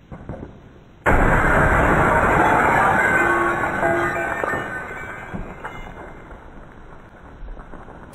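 An axe smashes a CRT television and its picture tube implodes: a sudden loud crash about a second in, then a long noisy decay with glass tinkling and ringing, fading over several seconds.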